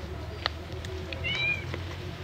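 A short, high animal call, rising then falling, about a second and a half in, over a low steady hum.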